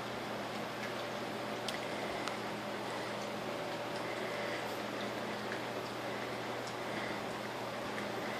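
Boxer puppies eating soaked kibble from metal pans: faint, wet chewing and lapping with a few light clicks, over a steady low room hum.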